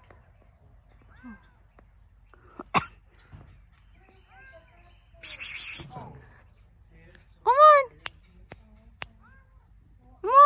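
A kitten calling down from high in a tree with one loud, rising-then-falling meow about three-quarters of the way in. Faint short high bird chirps come every few seconds, with a sharp click and a brief rustle earlier on.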